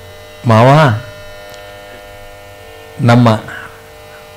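A man's voice singing two short, wavering phrases of verse, about half a second in and again near the end. Between them a steady electrical mains hum from the recording's sound system.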